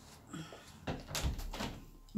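Ceramic coffee mugs set down on a table: a couple of faint knocks, then a cluster of knocks and clinks about a second in, with a spoon rattling in a mug.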